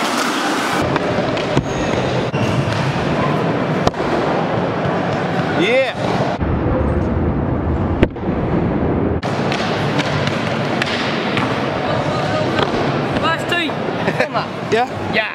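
Small hard scooter wheels rolling over a concrete skatepark floor, a continuous rough crackling noise, with a sharp knock about eight seconds in.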